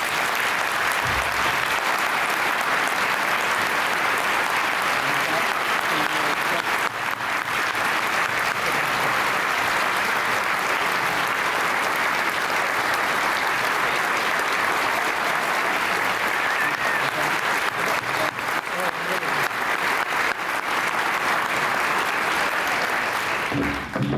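Audience applauding, a dense, steady clapping that holds at one level and dies away near the end.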